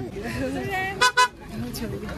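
Vehicle horn giving two short toots in quick succession about a second in, over people talking.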